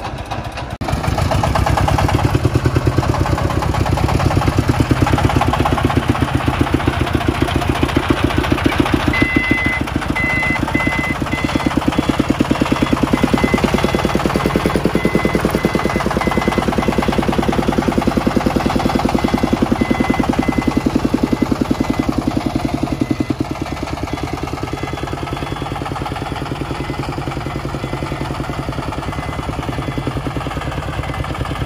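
Single-cylinder diesel engine of a loaded công nông farm truck running hard with a fast, even thudding while the truck is stuck in mud. It comes in loud about a second in and eases a little near the end, and a thin, broken high tone sounds for a while in the middle.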